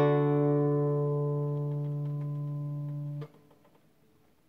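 A chord strummed on a classical acoustic guitar, ringing and slowly dying away, then cut off sharply a little over three seconds in.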